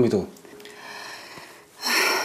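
The end of a man's spoken line, then quiet room tone, and near the end a woman's short, audible intake of breath.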